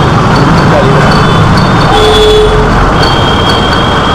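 Loud, steady street noise of a busy, narrow old-city bazaar lane: motor traffic and mingled voices, with a brief horn-like tone about two seconds in.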